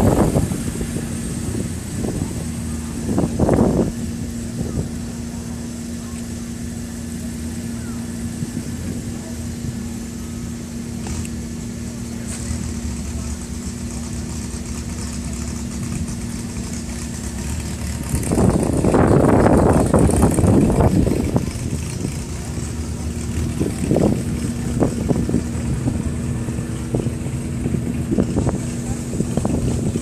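Car engine idling with a steady hum, with louder stretches about three seconds in and again between about 18 and 21 seconds.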